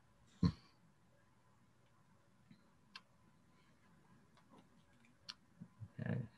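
Quiet open line on a video conference: one brief low sound about half a second in, then a few faint sharp clicks.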